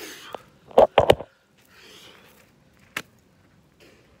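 Close-up handling noise on the filming phone as it is moved and set down: rubbing, three loud sharp knocks about a second in, and a single sharp click near three seconds.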